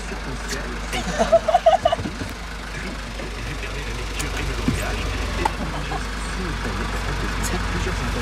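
The bus's engine idling with a steady low hum, heard from inside the cab while it waits at the toll booth. A short burst of laughter comes about a second in.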